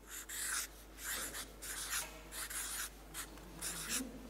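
Marker pen writing on flip-chart paper: a run of short strokes, several a second.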